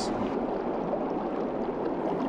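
Steady underwater rush of a bubble curtain: a continuous stream of fine air bubbles rising through the water.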